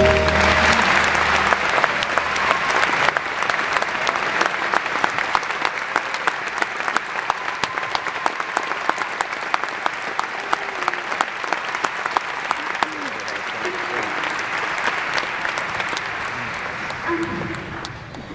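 Large theatre audience applauding at the end of a song, with some voices in the crowd; the song's last held note dies away in the first second or so. The clapping is loudest at first and slowly thins and quietens toward the end.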